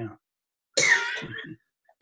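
A person coughs once, about a second in: a short rough burst that fades over under a second.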